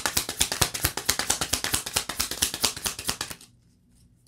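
A deck of tarot cards being shuffled by hand: a fast run of light card clicks that stops about three seconds in.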